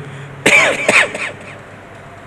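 A man clearing his throat with a couple of short coughs about half a second apart, then only low background hiss.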